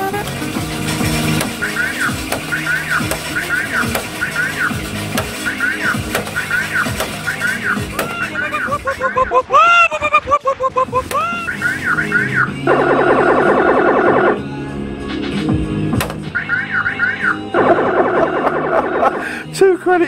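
Electronic fruit-machine sounds: a steady run of short rising-and-falling chirps, with two spells of a harsh buzzing tone in the second half, over music. Near the middle comes a short run of falling, voice-like glides.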